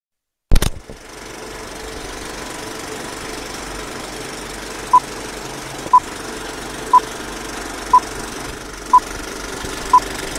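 Old film-projector sound effect for a film-leader countdown: a loud click as it starts, then a steady mechanical rattle with crackle. From about five seconds in, a short high beep sounds once a second, six times, marking the countdown numbers.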